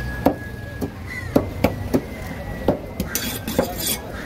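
A large knife chopping emperor fish into chunks on a wooden block, the blade striking through flesh and bone into the wood about six times at uneven intervals.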